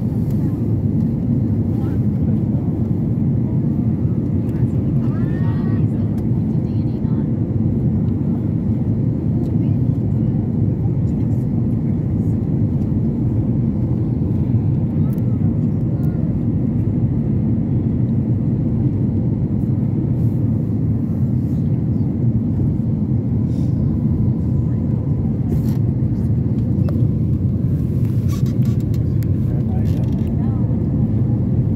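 Steady low rumble of jet engines and rushing airflow heard inside an airliner cabin in flight.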